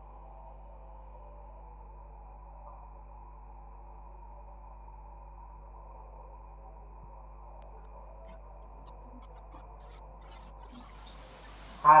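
Steady low hum made of several faint steady tones, like electrical background noise. A hiss comes in near the end, and a voice starts just as it ends.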